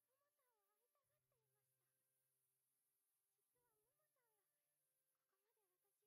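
Near silence, with only extremely faint wavering, gliding pitched sounds barely above the noise floor.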